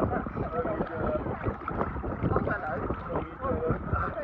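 Shallow seawater sloshing around people standing waist-deep, with wind on the microphone and indistinct voices.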